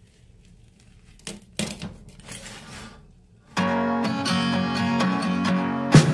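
A pizza wheel cuts through the baked crust on a metal pizza pan, with a few faint crunching, scraping strokes. A little past halfway, background music starts abruptly and is much louder.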